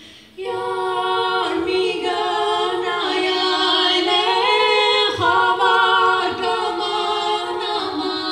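Mixed male and female a cappella vocal quartet singing an Armenian folk song in close harmony. There is a brief break for breath just after the start, then the voices come back in.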